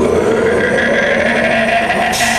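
A black metal band's amplified stage sound: a loud, held distorted note that bends slowly upward over a steady lower drone, with no drumbeat, just before a song starts.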